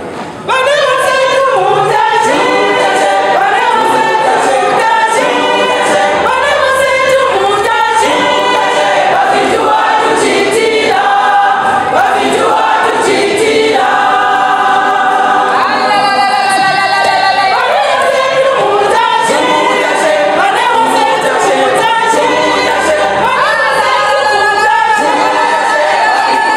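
Women's church choir singing a Zambian gospel song in full voice, the singing coming in strongly about half a second in.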